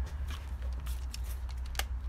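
Light clicks and knocks of handling as a cordless drill/driver is picked up and its bit set on the guitar's metal neck-plate screws, the sharpest a short metallic click near the end. A steady low hum runs underneath.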